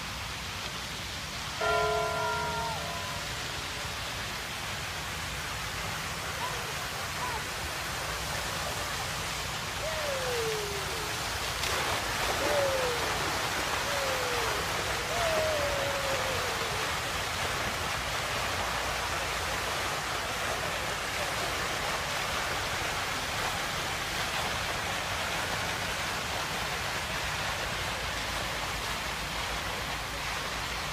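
Water jets of a large public fountain spraying and splashing into the basin: a steady rushing hiss that becomes fuller and brighter about twelve seconds in. A short pitched sound near the start and a few short falling calls in the middle rise above it.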